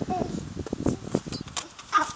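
A small child's brief vocal sounds mixed with light knocks and rustling as she walks with an open umbrella, with a louder short vocal sound near the end.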